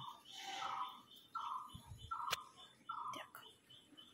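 Birds calling: a run of about five short calls, roughly two-thirds of a second apart, over a faint high chirping that repeats about three times a second. A single sharp click about two seconds in.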